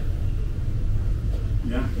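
A steady low rumble, with a man saying 'yeah' near the end.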